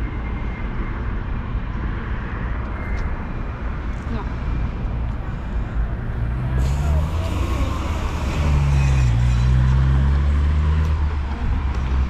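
City street traffic: a steady low rumble, with a motor vehicle passing from about six seconds in, growing louder and loudest from about eight to eleven seconds before easing off.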